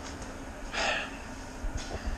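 A man's short breath out, a little under a second in, over low steady room tone, with a faint tick from the camera being handled near the end.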